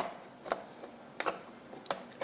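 Plastic pry tools clicking against a Dell Inspiron N5110 laptop keyboard and its retaining clips as the keyboard is pried free: four sharp clicks, the first the loudest.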